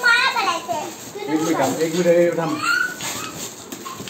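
Young children's excited voices and squeals, with the crinkle of foil gift wrap being torn open between them.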